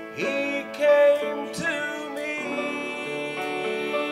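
A man singing a gospel song into a microphone over a country-style instrumental accompaniment with held notes and plucked strings.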